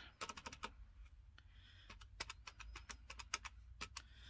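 Keys being pressed on a desk calculator: a run of quick, faint clicks in irregular bunches as a subtraction is keyed in.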